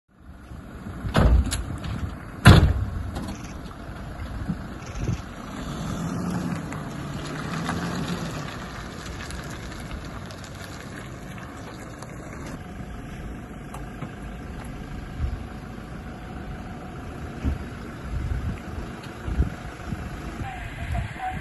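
Two loud metal door slams about one and two and a half seconds in as the rear doors of an armoured military vehicle shut, followed by the vehicle's engine revving up and down as it pulls away, then running steadily.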